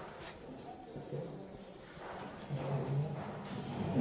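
Faint, indistinct speech in a large room, heard in short broken phrases over low room noise.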